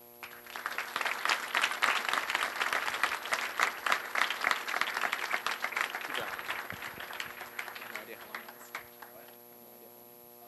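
Audience applauding at the end of a lecture: dense clapping that starts just after the beginning, holds strong for about five seconds, then thins out and dies away near the end.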